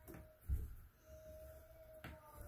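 Quarter-turn valve handle on a water manifold knocking once, softly, about half a second in as the shutoff valves are closed; a faint, thin, steady whine follows.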